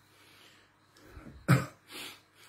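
A man clears his throat with a short, sharp cough about halfway through, followed by a softer second one.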